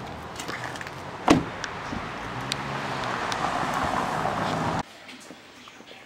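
A car door shuts with a single sharp thump about a second in, followed by street traffic noise that grows louder and then cuts off suddenly near the end, leaving a much quieter room.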